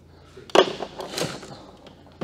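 A sharp clunk of robot parts set down on a workbench about half a second in, followed by softer knocks and rattling as metal parts are handled.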